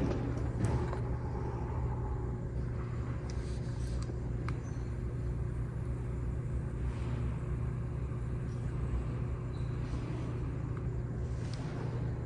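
Steady low rumble and hum of a large room's ventilation, with a few faint clicks and a brief soft hiss about seven seconds in.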